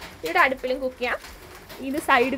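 A person speaking in short phrases during the first half, then a quieter pause before talk picks up again at the very end.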